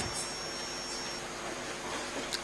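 Steady low hiss of courtroom room tone with no speech, with a faint high-pitched whine for about the first second.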